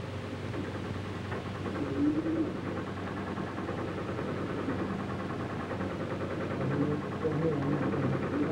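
Control-room instrument racks giving a steady electrical hum overlaid with a fast, even ticking buzz. Short muffled voices come through about two seconds in and again near the end.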